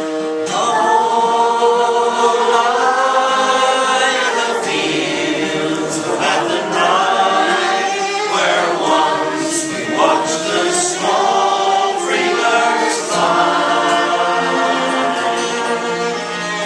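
Men's voices singing an Irish folk ballad together, with fiddle and strummed acoustic guitar. A new sung line comes in about half a second in.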